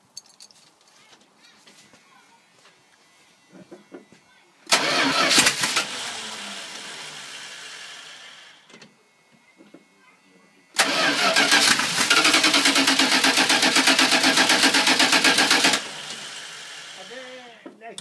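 1977 Dodge M882 pickup's 318 V8 engine starting: a sudden loud start about five seconds in that fades away over a few seconds and stops. About eleven seconds in it comes in loud again, running evenly for about five seconds, then drops to a lower level.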